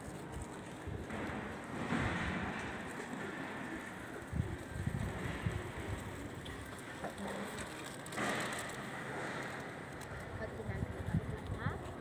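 Faint outdoor hiss that swells twice, with light knocks and rustles from a phone being handled.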